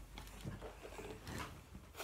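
Faint rustling of clothing with a few light knocks: handling noise as someone moves close to the recording phone.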